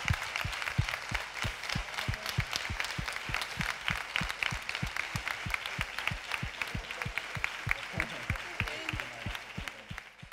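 Theatre audience applauding: dense clapping throughout, over a steady beat of low thumps about three to four a second.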